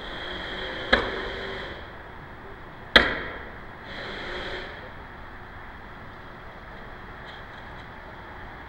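Pan mechanism of a remote outdoor camera moving: short whirs and two sharp knocks about two seconds apart, the second the louder, over a steady wind hiss.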